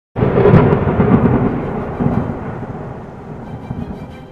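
A thunderclap sound effect: a sudden loud crash that rolls on as a rumble and slowly fades over the next few seconds.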